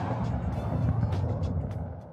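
Broadcast title-sequence sound effect: a whoosh that lands in a deep rumbling hit, loudest at the start and fading away over about two seconds.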